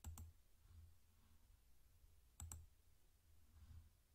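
Faint computer mouse clicks: a quick double click right at the start and another about two and a half seconds in, with near silence between.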